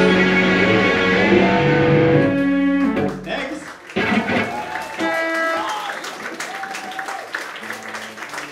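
Live punk rock band ending a song: drums, bass and electric guitars playing loud, then the final chord rings down and stops about three and a half seconds in. A few stray electric guitar notes follow, and then audience clapping starts near the end.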